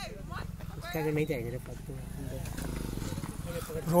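Faint, brief voices of people talking nearby, over a low steady rumble.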